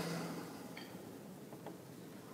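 Quiet room tone of a speech pause, opening with the fading tail of a man's drawn-out "and"; a faint short tick about a second in.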